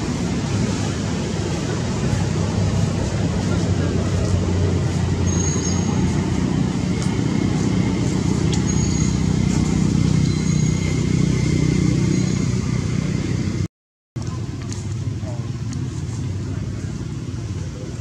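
Steady outdoor background of a low hum and indistinct voices, with a few short high whistle-like tones a few seconds in. The sound drops out for an instant near the end.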